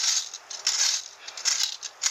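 Metal wire fan rake scraping through dry grass and fallen leaves in three strokes a little under a second apart.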